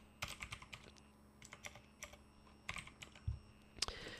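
Faint computer keyboard typing: a scattered run of irregular keystrokes with short pauses between them.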